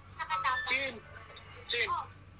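Short vocal sounds from a person's voice, sliding up and down in pitch, a few times over two seconds.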